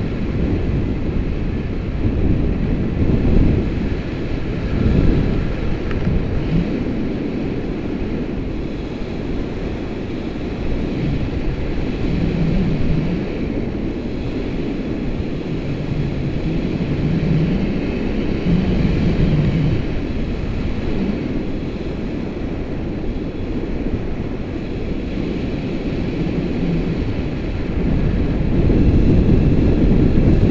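Airflow from a paraglider's flight buffeting the camera's microphone: a loud, low, steady wind rush.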